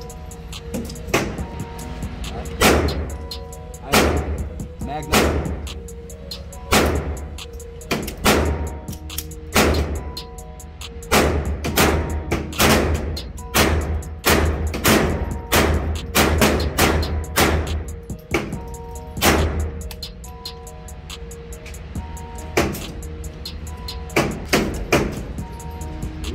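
A long, irregular string of .22 LR pistol shots, sharp cracks with indoor-range echo, coming fastest in the middle and thinning out toward the end. Background music with a heavy bass line runs underneath.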